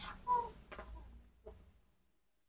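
A sharp click, then a few softer clicks and taps spread over the next second and a half.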